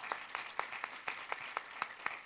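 Light, scattered applause from an auditorium audience: separate hand claps at an uneven pace, never building into a full ovation.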